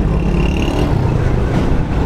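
Steady low rumble of motor traffic, the engines of rickshaws and motorcycles in a busy street.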